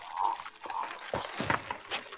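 Soundtrack of a TV drama playing: a man grunting over a noisy background, with scattered short clicks.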